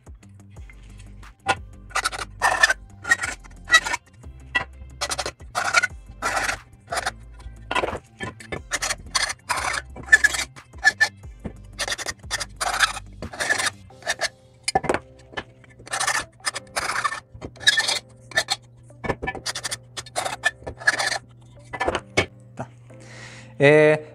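Hand file scraping the cut end of an aluminium profile in repeated strokes, about two a second with a couple of short pauses, taking off the burr left by the cut. Background music runs underneath.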